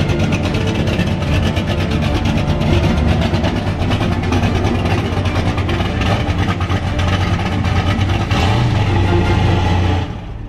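Turbocharged LS V8 of a 1971 Chevrolet Caprice donk running as the car is driven down a trailer ramp, over background music; the engine's low rumble grows louder about eight seconds in.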